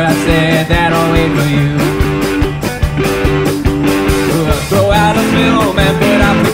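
Indie rock band playing live: a drum kit keeps a steady beat under electric guitars, bass and keyboard.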